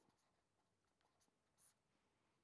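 Near silence with a faint scratch of a pen writing on paper, most audible once, briefly, about one and a half seconds in.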